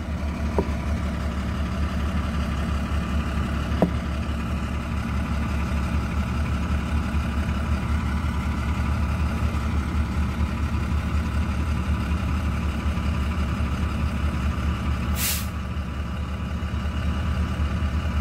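Steady low rumble of an idling engine. About fifteen seconds in there is a short, sharp hiss of released air.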